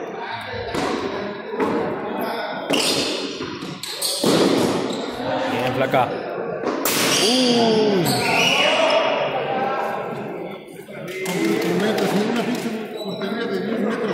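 Frontón a mano rally: a rubber handball struck with the bare or gloved hand smacks against the court walls and bounces on the concrete floor, a string of sharp, irregular impacts echoing around the hall. Players' voices call out in the middle and near the end.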